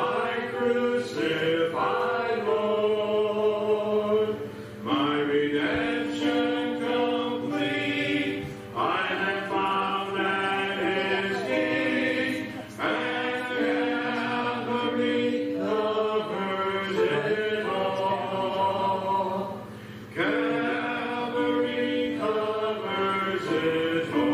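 Congregation singing a hymn: long held notes sung line by line, with a short break between phrases about every three to four seconds.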